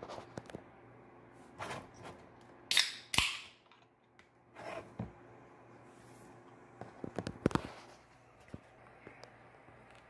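A 473 ml can of Mountain Dew Purple Thunder being opened by its pull tab: a sharp crack about three seconds in, followed at once by a short hiss of carbonation escaping. Light clicks and knocks from handling come before and after.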